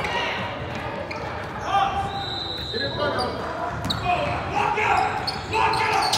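A basketball bouncing on a hardwood gym floor during play, with scattered shouts and voices of players and spectators echoing in the large hall.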